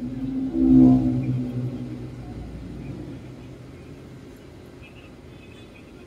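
A motor vehicle's engine passing close by, loudest about a second in and then fading away over the next few seconds.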